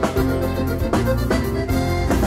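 Live Sardinian dance music for the passu 'e tres: a band playing a sustained melody over a steady, regular drum beat.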